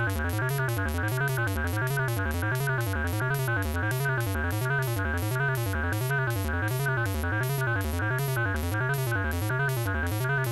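Analogue modular synthesizer playing a fast repeating sequenced pattern through an MS-20-style voltage-controlled filter. An LFO sweeps the cutoff up and down about twice a second, with the resonance set at the point of triggering.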